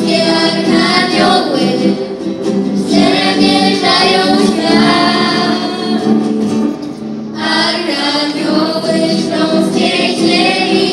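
A small group of young singers sings a song together, accompanied by two acoustic guitars. The voices break briefly between phrases about seven seconds in.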